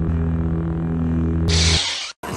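Logo-intro sound effect: a sustained low drone of several held tones, slowly fading, with a short whoosh about one and a half seconds in before it cuts off.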